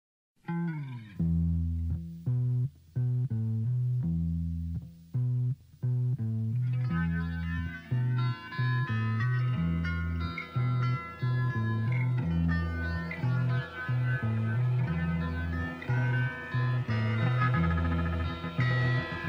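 Opening of a 1979 UK punk rock record: a bass guitar riff played in short, stop-start notes, joined about seven seconds in by electric guitar through effects, filling out the sound.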